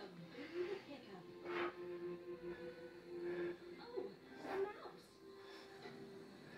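A children's TV show playing on a television: speaking voices and music, with a long held note in the middle.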